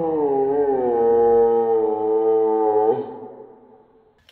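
A girl's voice holding one long, loud, howl-like vowel cry, its pitch wobbling at first and then held steady, breaking off about three seconds in.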